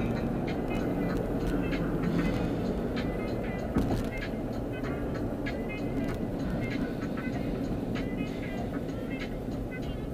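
Steady road and engine noise inside a moving car, with music playing over it. A short knock just before four seconds in.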